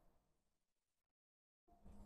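Near silence, with a brief total dropout in the middle where the audio cuts out; a faint low hum comes back near the end.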